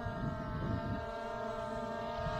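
Skydio 2 quadcopter drone hovering nearby, its propellers giving a steady multi-tone whine, with a low rumble underneath in the first second.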